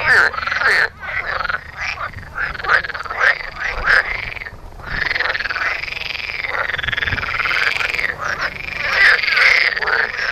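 Water frogs croaking in the breeding season. For the first four seconds there are short croaks several times a second; after a brief dip, a long unbroken rattling croak begins about five seconds in and carries on.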